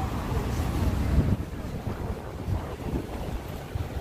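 Wind buffeting a phone's microphone in uneven gusts, over the steady noise of city street traffic.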